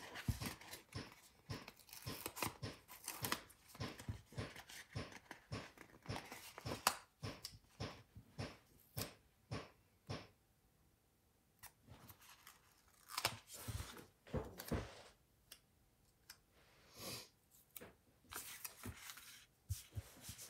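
A paper sticker sheet handled and stickers peeled off their backing, with many soft clicks and taps of fingers on paper and a few longer peeling rasps in the second half.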